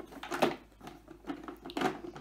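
Short plastic knocks and scrapes as the dust box is pushed back into the body of a cheap robot vacuum cleaner, the sharpest clack about half a second in; the box goes back in only with difficulty.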